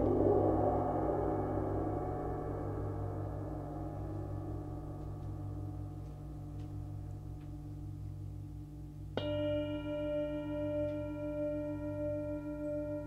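Sabian Turkish tam-tam ringing with a dense wash of overtones from a strike just before, fading slowly over several seconds. About nine seconds in, a Tibetan singing bowl is struck and rings with a clear, steady, layered tone.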